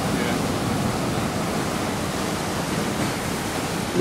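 Ocean surf breaking close by, a steady rushing wash of noise.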